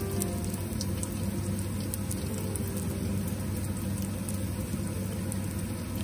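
Spring rolls frying in hot oil in a steel wok: a steady sizzle with scattered small pops, over a low steady hum.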